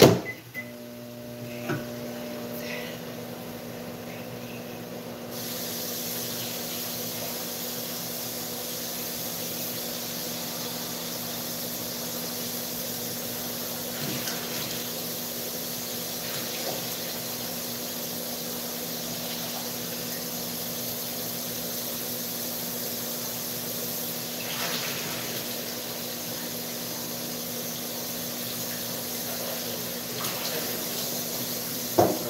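Over-the-range microwave oven running with a steady hum after a few clicks from its door and keypad. A higher hiss joins about five seconds in.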